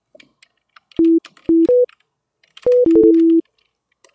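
Sytrus synthesizer's default preset playing plain sine-wave tones: three short notes at two pitches about a second in, then a second short phrase near three seconds that ends on a longer lower note.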